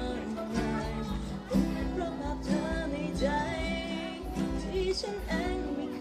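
Isan-style Thai dance music played by a live band with a singer: a bending, ornamented vocal line over a steady pulsing bass beat.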